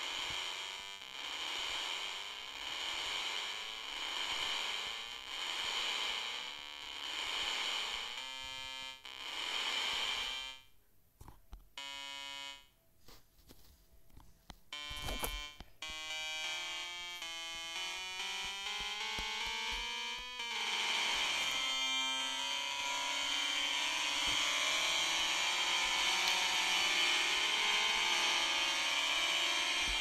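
Chrome Music Lab Song Maker's Synth instrument playing short rising staircase runs of notes that repeat about every second and a half, then a few single notes and another rising run. About two-thirds of the way through, many notes sound together in a dense, clashing cluster that holds and sounds horrible.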